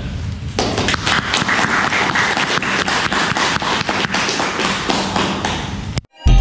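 Audience applauding, the dense patter of many hands clapping starting about half a second in and going on until the sound cuts off at the end.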